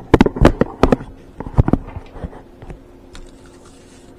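Handling noise close to the microphone: a quick run of loud clicks and knocks in the first second, a few more about a second and a half in, then light scattered ticks.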